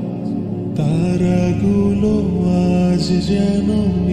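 Background vocal music in a chant-like style: a voice singing long, wavering held notes over a low steady drone that swells about a second in.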